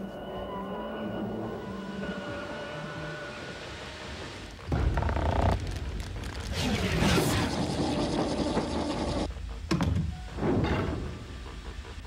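Sound effects of heavy mechanical sci-fi doors opening one after another: a run of loud thunks and mechanical clanks starting about a third of the way in. Before that, a steady low hum with faint held tones.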